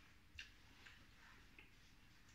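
Near silence with three faint short clicks, the first the sharpest, about 0.4 s in, and two softer ones about a second and a half second apart.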